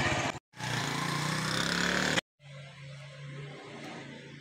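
Small motorcycle engine running steadily with wind noise, its pitch rising slightly. It cuts off abruptly and gives way to a quieter steady low hum.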